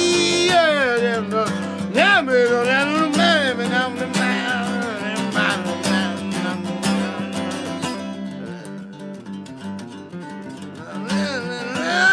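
Steel-string acoustic guitar strummed steadily, with a sung vocal line without clear words over it in the first few seconds and again near the end; in between the guitar plays alone.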